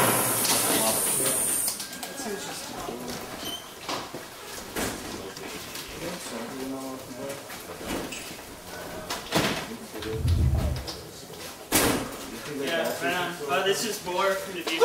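Harsh noise from a rig of effects pedals and a mixer, cutting off about two seconds in. Then a lull of crowd voices, with a few sharp clicks and a low thump.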